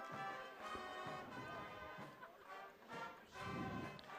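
Faint brass music playing, with sustained held chords of trumpets and trombones.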